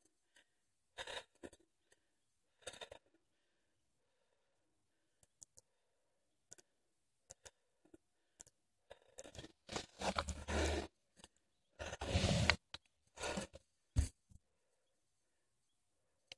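Haro Flightline 26-inch mountain bike rolling down a gravel trail: scattered short rattles and clicks from the bike, with near-quiet gaps between. The loudest sounds are two longer bursts of rushing noise, likely wind on the microphone, about ten and twelve seconds in, and a sharp click near the end.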